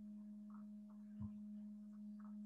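Faint steady low hum, a single tone with a fainter higher overtone. A soft low bump comes about a second in.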